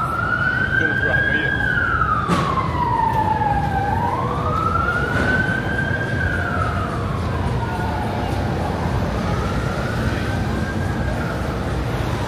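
Emergency vehicle siren on a slow wail, rising and falling in pitch about every four to five seconds and growing fainter over the last few seconds, over steady street noise.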